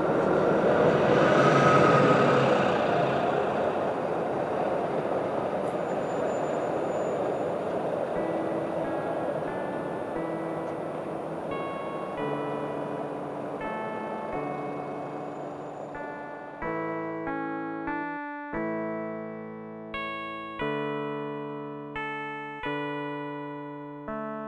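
A road vehicle passes close by: a rush of traffic noise that swells and then fades over the first several seconds. Piano music begins under it with soft single notes about a third of the way in, then moves to louder struck chords, each dying away, for the last third.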